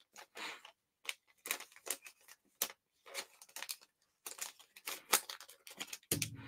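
Clear plastic card sleeve and rigid top loader being handled as a trading card is slid into them: faint, scattered crinkles and scrapes of plastic.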